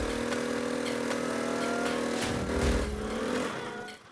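Motor scooter engine running and revved, a steady drone that changes and drops away about three seconds in.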